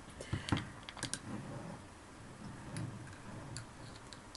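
A thin utensil clicking and scraping against the inside of a glass candle jar as it digs through the melted wax for a buried jewelry packet. A few sharp clicks come in the first second or so, then fainter scattered ticks.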